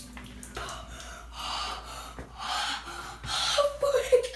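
A boy gasping heavily from the cold just after getting out of an ice bath, with about three loud breaths roughly a second apart.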